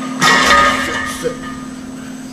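Weight plates and lever arms of a plate-loaded shoulder press machine set down at the end of a set: a sudden metal clank about a quarter second in that rings on for most of a second, followed by a small click.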